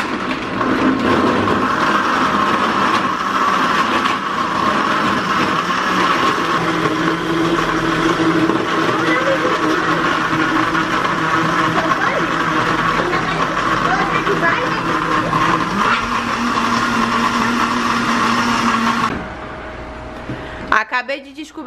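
Electric countertop blender running, blending peaches, ice, champagne and condensed milk into a cocktail. Its pitch steps up slightly late on, and it shuts off just before the end.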